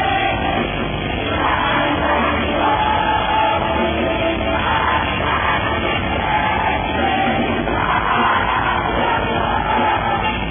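A metalcore band playing live at full volume: distorted electric guitars, bass and drums with vocals over them.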